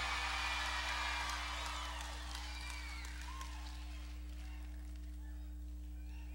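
Faint audience laughter and murmur from a live crowd, dying away over the first couple of seconds, over a low steady held hum.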